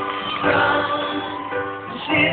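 Live pop-rock band with keyboards and drums playing the opening of a song, heard from within the audience in a low-fidelity recording.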